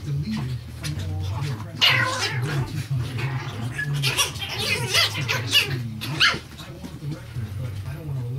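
Chihuahua puppies yapping and squealing in play, a string of short high-pitched cries bunched in the middle.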